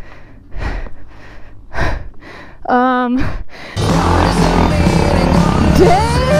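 A dirt-bike rider breathing hard in short gasps after tipping over on a steep hill climb, with a short voiced groan about halfway in. Background music cuts back in loudly about two-thirds of the way through.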